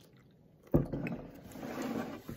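Milk being poured from a plastic jug into a plastic cup: a knock of the jug or cup about three-quarters of a second in, then the pour, growing louder toward the end.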